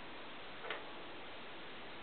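Steady hiss with a single short click a little under a second in.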